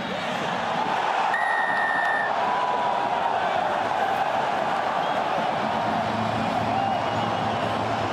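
Rugby stadium crowd cheering steadily as a try is scored, with a single steady whistle blast lasting about a second, a second and a half in.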